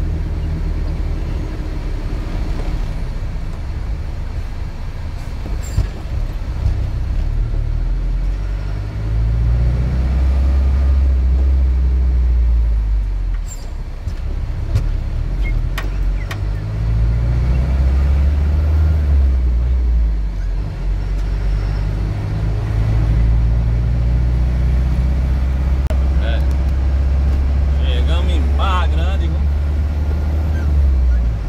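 Vehicle engine heard from inside the cab while driving, its pitch climbing and dropping again several times as it accelerates and shifts through the gears. Near the end a short wavering, higher-pitched sound comes in over it.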